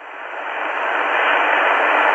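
Static hiss from an XHDATA D-808 portable receiver tuned to the 10-metre amateur band, heard between two stations' transmissions. The hiss swells steadily louder.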